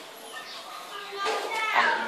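Speech: a young voice talking, coming in strongly about two-thirds of the way through after a quieter stretch with faint voices in the background.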